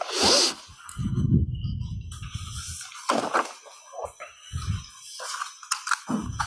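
Sheets of paper rustling and being shuffled as they are picked up and sorted, with a few low muffled knocks of handling. A brief sharp rustle comes right at the start and a low muffled stretch lasts a couple of seconds.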